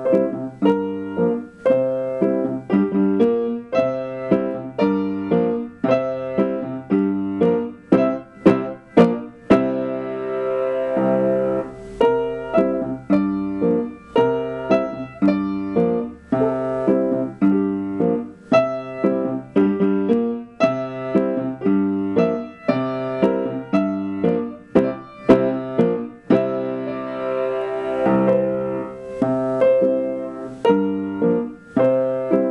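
Piano played four hands: a Latin-style duet of steady, rhythmic struck chords over a bass line, with a few longer held chords about ten seconds in and again near the end.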